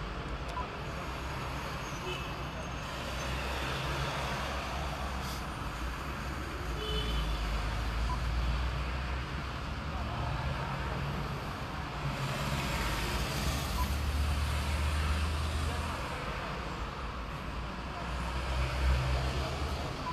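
Steady low vehicle rumble heard inside a car's cabin, swelling and easing slowly, with faint indistinct voices in the background.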